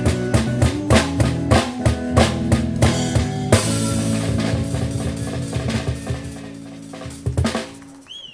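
A live son band playing the final bars of a song: quick drum and cymbal strikes over guitar chords for about three and a half seconds, then a last chord held and slowly fading, closed by a few final drum hits near the end.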